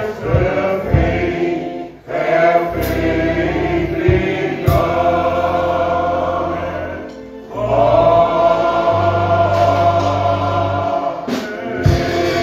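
A gospel choir of men singing a slow song in long held phrases over a low steady bass, with short breaths between phrases about two and seven seconds in. A couple of sharp knocks sound near the end.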